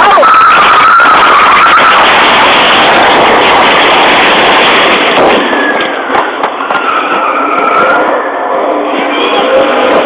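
A Ford pickup truck accelerating hard from a standstill and driving through a store's glass front: a loud, continuous rush of engine and tyre noise with a thin squeal, heard through an overloaded, distorted police microphone. About five seconds in, it gives way to a rougher, uneven mix of noise.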